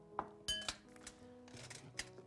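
A few light metallic clinks from a stainless-steel food mill being handled and set onto a bowl, over quiet background music.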